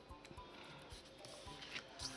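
Faint background music, barely above near silence.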